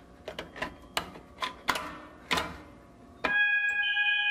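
A fire alarm pull station being handled and pulled, with several sharp clicks and clunks, then about three seconds in a loud, steady fire alarm tone starts abruptly.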